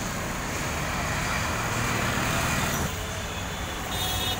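Road traffic noise under a steady low rumble, with a vehicle passing by: its rushing sound swells and then drops away about three seconds in.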